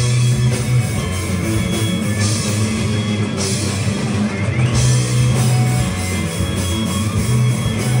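Live rock band playing an instrumental passage on electric guitars, electric bass and drum kit, with a brighter wash of cymbals for a couple of seconds starting about two seconds in.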